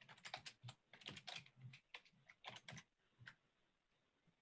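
Faint typing on a computer keyboard, picked up through a video-call microphone: irregular runs of key clicks that stop a little after three seconds in.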